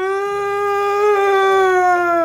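A man's long, steady wail, one held 'aaah' at a fairly high pitch: a mock cry of pain at being dazzled by bright sunlight.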